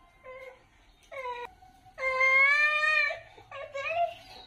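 A toddler's wordless voice: two short calls, then one long, loud call about two seconds in lasting about a second, and a brief call near the end.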